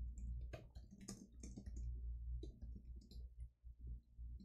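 Computer keyboard being typed on: irregular runs of key clicks, over a low steady hum.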